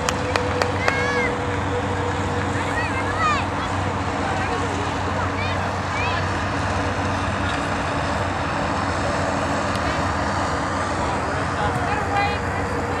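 Outdoor soccer-game sound: scattered shouts and calls from players and sideline spectators over a steady background hiss and hum, with a few sharp clicks in the first second.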